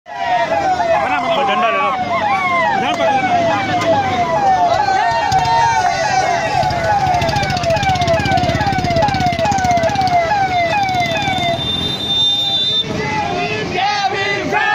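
Electronic siren sounding a fast repeating yelp, each note sliding down in pitch, about three a second; it stops about eleven and a half seconds in, and voices shout near the end.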